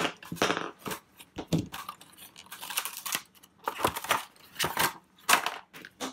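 Clear plastic blister pack being opened by hand and a small steel hatchet multi-tool and its accessories taken out: irregular crackles and rustles of stiff plastic with scattered knocks and clinks.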